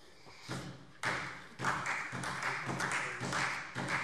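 Scattered applause from part of a parliamentary chamber, starting about a second in and heard muffled through the lectern microphone.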